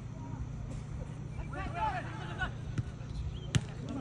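Players shouting on the pitch, then a single sharp thud of a football being kicked, about three and a half seconds in, the loudest sound here, over a steady low background hum.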